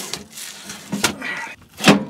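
Heavy Lippert Ground Control 3.0 landing-gear jack being hauled up out of its compartment, knocking and scraping against the frame. There is a sharp knock about halfway through and the loudest clunk near the end.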